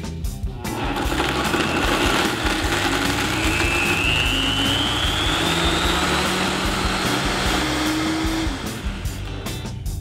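Vitamix blender motor starting up a little under a second in and running steadily, blending ice cream, cream and sandwich cookies into a milkshake; its whine climbs in pitch about a third of the way through as the motor speeds up.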